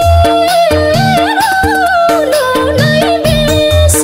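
Nepali lok dohori folk song: a woman's voice sings long held, wavering, ornamented notes over a folk band accompaniment with a steady repeating bass-and-drum rhythm.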